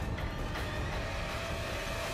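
Soundtrack of an animated sword-fight scene: a steady, dense rush and rumble with faint held tones underneath.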